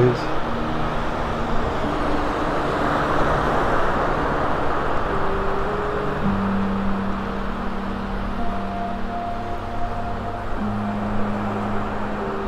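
Small waves breaking and washing up a sandy beach in a steady rush, with soft background music of long held notes that grows plainer from about halfway through.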